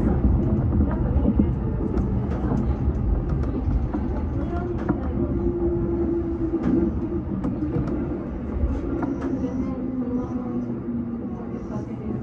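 JR Yokohama Line E233-series electric train braking into a station: a low rumble of wheels and running gear that slowly fades, with a motor whine that steps down in pitch as the train slows, and a few light clicks.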